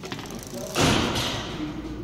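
A sudden thud with a short rush of noise about three-quarters of a second in, as the roller blind's fabric drops down off the roller.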